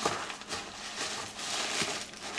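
Rustling and light knocks of packaging as a cardboard gift box is unpacked by hand, uneven and scratchy with a couple of small clicks.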